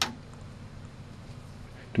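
Low, steady room tone with a faint hum, after a short click right at the start.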